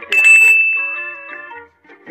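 A sharp bell-like metallic ring that starts suddenly just after the start and fades away over about a second and a half, with several lower tones under one bright high tone.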